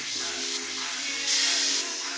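Harbor Freight deluxe airbrush (model 95810) hissing air, louder for about half a second midway, over background music. With the trigger pulled all the way back it gives nothing, a sign of its faulty trigger mechanism.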